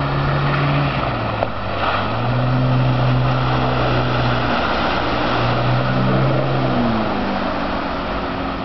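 Outboard engine of a rigid inflatable boat running at speed, its pitch dipping and rising a few times as the throttle and load change, over a steady rushing hiss.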